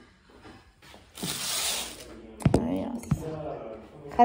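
A woman speaking briefly in the second half, after a short hiss about a second in, with two sharp knocks.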